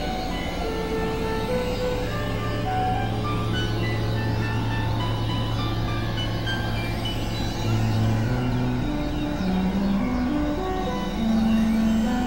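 Experimental electronic synthesizer music: short scattered notes over a dense, noisy drone bed. A long low note holds through the first half, then bass notes step upward in short stages toward the end.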